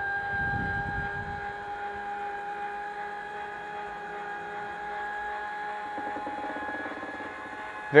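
Steady mechanical hum made of several held tones, with a low rumble in about the first second and faint rapid pulsing near the end.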